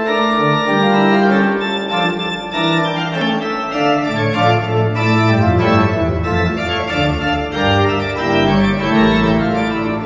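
Organ music: full sustained chords over a bass line of long held notes, with the bass going deeper and stronger about four seconds in and again near the end.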